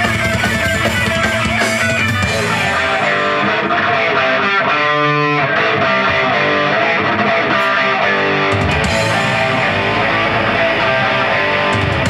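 Heavy metal band playing live with loud electric guitars riffing, and a chord left ringing on its own about five seconds in before the band comes back in.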